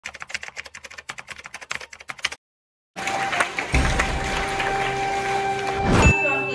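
Typewriter-style typing clicks, rapid and even, for about two seconds, then a brief silence. Music begins about three seconds in, with held tones and a deep bass coming in a little later.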